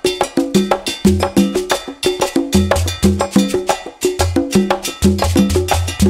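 Background music with a steady, quick percussive rhythm over a repeating bass line.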